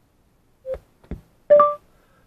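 A soft click and a short blip, then about a second and a half in a louder electronic beep lasting about a quarter second, played through the car speakers by the Aukey Bluetooth receiver: the voice-command prompt that comes on when the receiver's knob is pressed and held.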